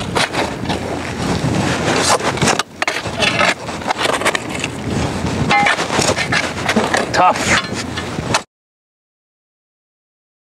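Steel shovel digging and scraping in rocky, gravelly soil, with many rough scrapes and knocks of the blade against stones. The sound cuts off abruptly about eight and a half seconds in.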